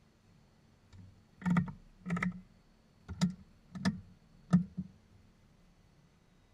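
Cockpit switches of a Shrike Commander being flipped off one after another during shutdown: about half a dozen sharp clicks spaced roughly half a second to a second apart, over a faint steady hum, with the engines stopped.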